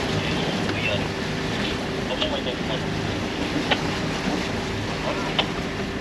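Wind buffeting the microphone and water rushing past the hull of a sailboat under way in a strong breeze, over a steady low hum, with a few faint clicks.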